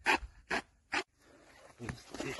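Three short rasping strokes about 0.4 s apart, a blade sawing through the casing of a UR-77 line-charge section.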